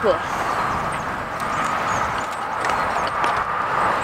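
Steady outdoor background noise on an open field, with faint voices in the background.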